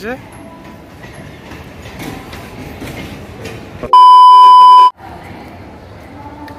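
A single electronic beep, one steady high tone lasting about a second, starts about four seconds in and is by far the loudest thing. All other sound cuts out while it plays. Before it there is low railway platform background noise.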